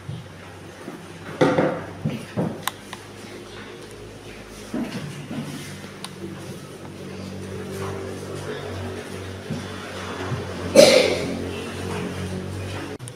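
Classroom noise during group work: scattered short knocks and rustles from desks and paper and bits of children's voices, over steady low held tones. A louder sharp sound comes near the end.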